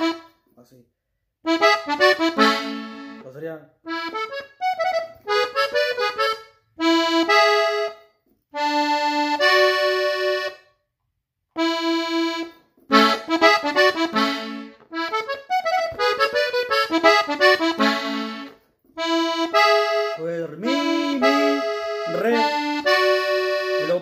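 Button accordion tuned in E (Mi) playing melody runs and ornaments in A major, phrase by phrase with short pauses between the phrases.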